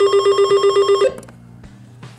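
Alertworks BAR-10 NOAA weather radio sounding its alert tone in alert-test mode: a loud, buzzy, low-pitched beep pulsing rapidly, about nine beats a second, that stops abruptly about a second in.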